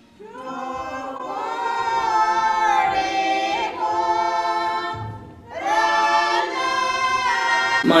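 Background vocal music: voices singing long, held notes that glide between pitches. There is a short break about five seconds in.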